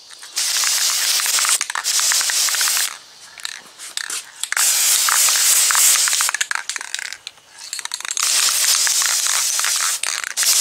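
Aerosol spray can of guide coat hissing as it is misted over primed repair spots, in several bursts of about two seconds each with short pauses between.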